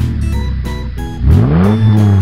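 Car engine revving up about a second in, its pitch rising quickly and then holding high, over background music.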